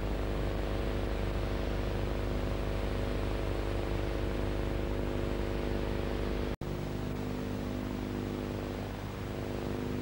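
Steady electrical mains hum with hiss, with a momentary drop-out to silence about six and a half seconds in.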